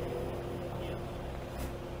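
A steady low hum, with no clear event in it.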